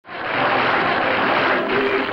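Studio audience applauding, starting abruptly and holding steady, with theme music faintly coming in underneath toward the end.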